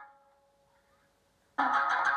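Shamisen ensemble playing breaks off, a last note rings and fades into near silence, and about a second and a half in loud, rhythmic shamisen playing starts again abruptly.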